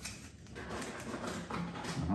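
Faint clicks and light rustling of a thin plastic packaging sheet being turned over and flexed in the hands, with a short murmur of voice near the end.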